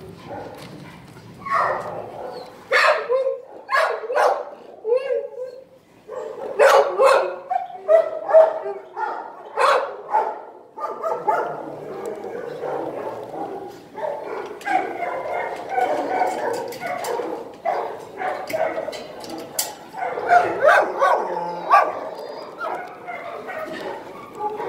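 Dogs barking in a shelter kennel room: a run of loud, sharp barks in the first ten seconds, then a continuous din of barking.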